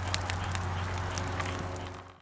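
Small stick campfire burning, with scattered sharp crackles over a steady low rumble, fading away near the end.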